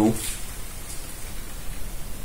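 Steady background hiss in a pause between words, with the tail of a spoken word at the very start.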